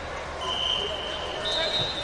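Wrestling-tournament hall din of many voices, cut by two long whistle blasts: one starting about half a second in and lasting about a second, then a second, higher one near the end. A low thump comes near the end.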